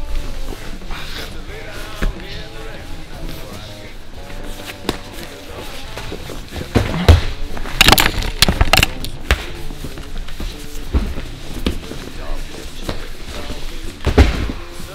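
Grappling on a training mat: a cluster of sharp thuds and slaps about seven to nine seconds in, with a few single knocks before and after, over background music and indistinct voices.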